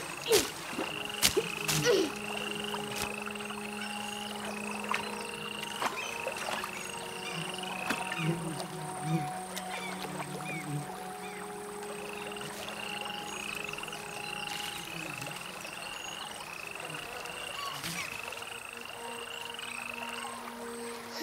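Frogs calling in a steady series of short chirping notes, about two a second, in two long runs, over soft sustained music tones. A few sharp clicks sound in the first two seconds.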